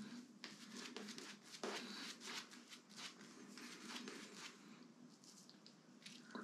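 Faint wet squishing and crackling of an Omega Roma Colosseum shaving brush working soap lather on the face, in many small irregular strokes. The lather is already built up.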